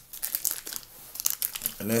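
A wrapper crinkling as it is handled in the hands: a run of quick, irregular crackles.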